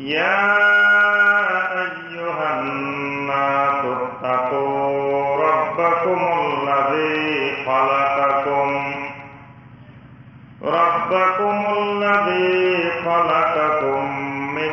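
A man chanting in long, drawn-out melodic phrases that glide between held notes. The chant breaks off for about a second and a half about two-thirds of the way through, then starts again.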